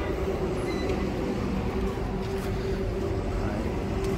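A vehicle engine running steadily, a low, even drone with no knocks or changes.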